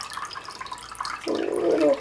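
A thin stream of water running from a small hole in a plastic bottle and splashing into a glass dish below, a soft, uneven trickle. A voice comes in near the end.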